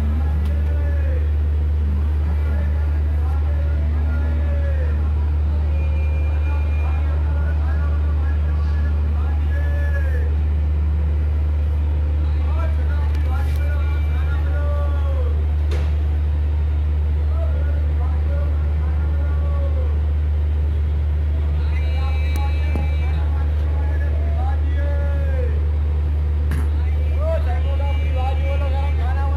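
A steady, loud low rumble runs throughout, with short voices calling out every second or two over it, and a brief run of high tones a little past three-quarters of the way through.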